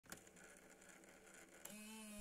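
Near silence: faint hiss and hum, with a short steady buzzing tone coming in near the end.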